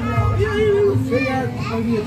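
Several raised voices talking and calling out over each other, over background music with a steady bass.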